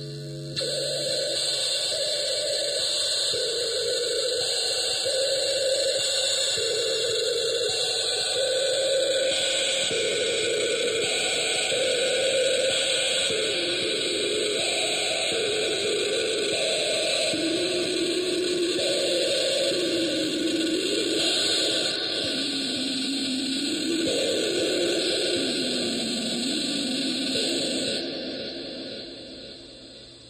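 Experimental homemade touch-plate electronic sound machine putting out a loud hissing static wash, with a wavering tone underneath that keeps jumping between pitches while fingers rest on its copper contacts. It fades down near the end.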